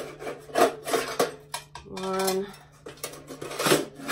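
Nested galvanized metal buckets scraping and rubbing against each other as they are pulled apart, in several short rasping strokes. A short held tone sounds a little past halfway.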